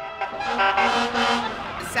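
Vintage fire engine passing, its horn sounded for about a second over street noise.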